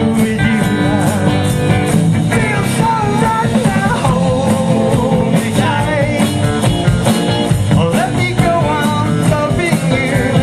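Live rock band playing: electric guitars, bass guitar and drum kit, with a wavering melody line over the top.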